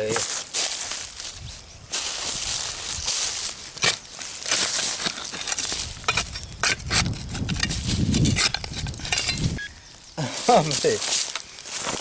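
A short-handled digging tool chopping and scraping into soil and dry leaf litter, in repeated crunching strikes as a metal-detecting target is dug out.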